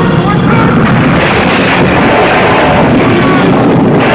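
Loud, dense battle commotion from a film soundtrack: many men shouting over a continuous rushing din.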